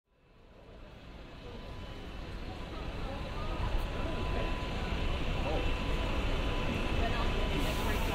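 City street ambience fading in from silence: road traffic with cars and buses, and the chatter of passing pedestrians. A brief hiss comes near the end.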